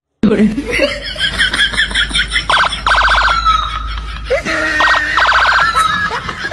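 An electronic alarm-like warble heard twice, about two and a half and five seconds in: each is a rapid pulsing trill that trails into a held tone. A voice is heard at the start.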